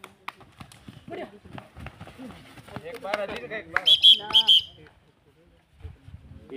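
Players shouting and feet stamping and scuffling on a dirt kabaddi court during a raid and tackle. There is a burst of loud, high-pitched shouts about four seconds in, then a brief lull near the end.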